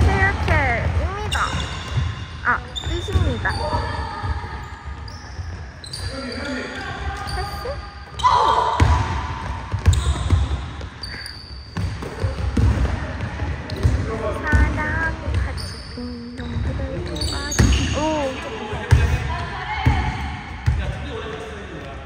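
Basketball being dribbled on a hardwood gym floor, with repeated thuds, sneakers squeaking as players run and cut, and players' voices calling out now and then.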